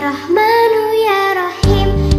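A children's song: a child's voice sings a long held, wavering line over light backing music. The bass and beat drop out at first and come back in about one and a half seconds in.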